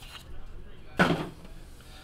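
A small cardboard trading-card box being handled, with light rustling and then a single sharp knock about halfway through as it is set down.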